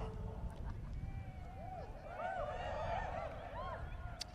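A large crowd laughing. The laughter is faint at first, swells about a second in, and is fullest near the end.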